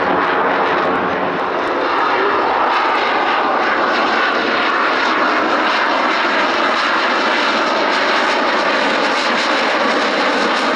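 Fighter jet engine noise from a display flypast overhead, loud and steady throughout.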